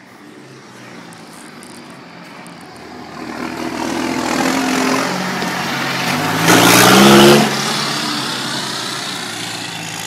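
Case IH Puma 180 tractor's six-cylinder turbo diesel, exhaust straight-piped off the turbo, driving up and past close by. The sound builds from about three seconds in, is loudest for about a second just past the middle, then falls away as the tractor moves off.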